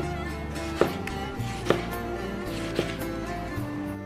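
Background music with held instrumental tones, and three sharp knocks about a second apart as a kitchen knife slices through a tomato onto a wooden cutting board.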